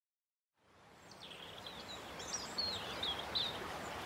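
Recorded nature ambience fading in after a brief silence: many birds chirping over a steady background noise.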